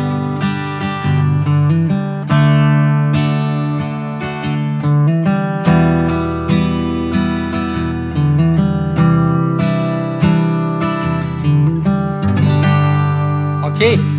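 Steel-string acoustic guitar playing a G, D, E minor, C add9 chord progression, each chord struck and let ring, with small note movements leading from one chord into the next.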